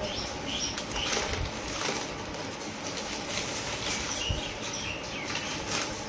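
Plastic bag crinkling and rustling on and off as it is handled.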